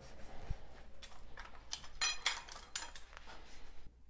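A rag rubbed briskly along a freshly soldered copper pipe to clean the joint, giving quick scrapes and light metallic clinks that stop suddenly near the end.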